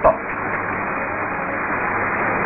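A seated crowd applauding: a dense, even patter that holds steady throughout, heard through the narrow, muffled sound of an old newsreel soundtrack.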